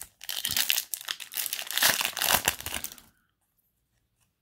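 Foil Yu-Gi-Oh! booster pack wrapper crinkling as it is torn open, a dense crackle of about three seconds that stops suddenly.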